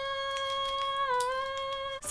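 One sustained high musical note, held steady in pitch, dipping a little about a second in and cut off abruptly at the end.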